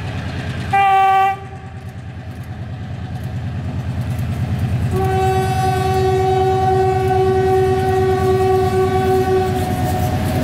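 Diesel locomotive horn: a short blast about a second in, then one long blast from about halfway to near the end. Under it the locomotive's engine throbs rhythmically, growing louder as the train approaches.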